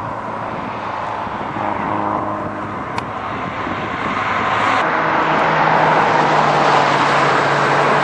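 Classic cars driving along a road toward the camera: engine notes over tyre and road noise, growing louder. The engine note changes to a different, steadier tone about five seconds in as another car comes through.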